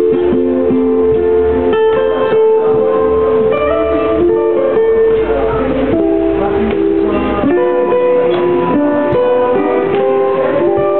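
Solo ukulele playing a melody over chords, the plucked notes ringing on one after another.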